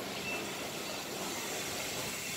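Steady, even background noise with nothing distinct in it, in a short pause between a man's words.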